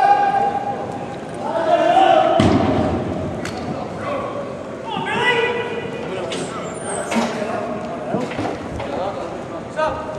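Players and spectators shouting during an indoor lacrosse game in a large hall, with a sharp thud about two and a half seconds in and a few lighter knocks after it.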